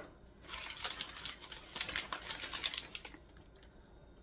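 Parchment paper crinkling and rustling as a tray lined with it is handled and lifted: a rapid run of small crackles lasting about two and a half seconds, stopping about three seconds in.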